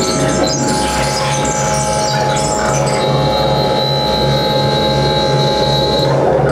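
Live electronic music from a laptop ensemble played over loudspeakers: several sustained steady tones over a pulsing low drone, with scattered high blips in the first half and a high thin tone that enters about halfway.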